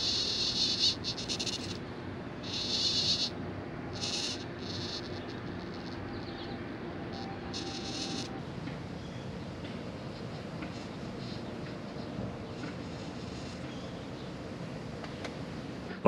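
Waterproof 35 kg digital servo on a 9.9 kicker outboard's throttle linkage whining in short bursts, about five times over the first eight seconds, as it moves the throttle in response to the servo-tester dial. A low steady hum runs underneath.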